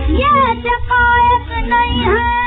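A woman singing an Urdu nazm in Hindustani classical style, her voice gliding and holding notes over instrumental accompaniment. It is a 1931 shellac 78 rpm gramophone recording, so the sound is narrow and dull, with no treble.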